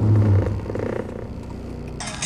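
A short, low, fart-like rasp inside a car, not a fart. It is loudest at the start and fades into a fine rattle over about a second.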